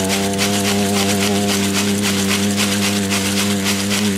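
A man's voice holding one long, steady sung note at the end of a line of an Amazonian icaro, over a rattle shaken in a quick, even rhythm.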